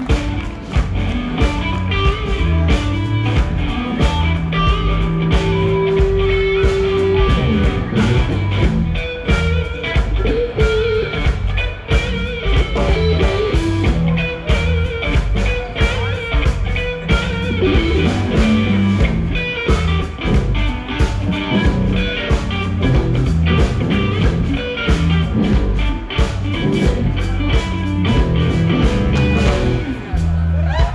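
Live rock band playing electric guitars over bass guitar and a steady drum beat, with a held guitar note a few seconds in.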